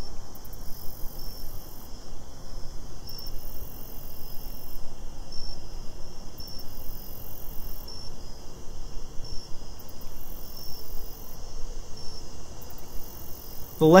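Night-time ambience of crickets chirping steadily, with a small high chirp about once a second, over a low hum.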